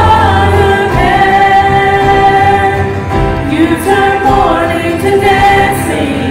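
Church worship team singing a gospel song together, women's and a man's voices in harmony, holding long notes over a band accompaniment.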